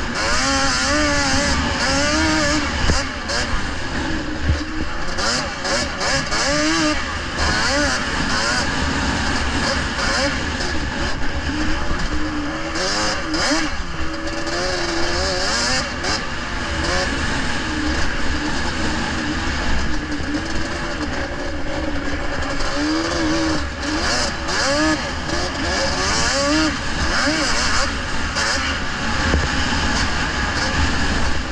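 Onboard sound of a racing kart's engine running hard on a snow track, its pitch rising and falling over and over as the throttle is worked through the corners, over steady wind and track noise.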